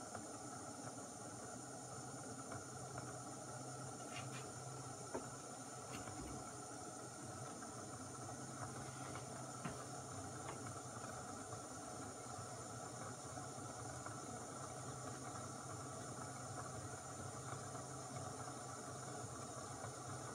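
Gas canister stove burner running with a steady hiss under a stainless steel Esbit coffee maker as the water heats toward brewing, with a few faint ticks from the heating metal a few seconds in.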